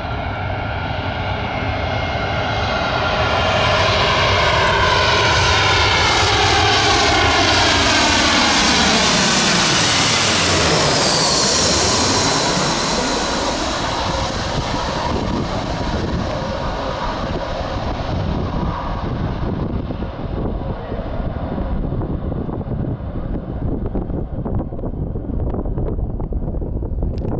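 Twin-engine jet airliner on final approach with its landing gear down, passing low overhead: the engine noise builds to a peak about eleven seconds in. The high whine then drops in pitch as the aircraft moves away, leaving a lower rumble.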